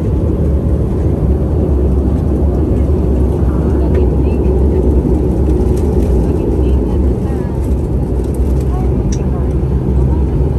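Airliner engine and cabin noise heard from inside the cabin as the plane moves on the ground: a loud, steady low rumble.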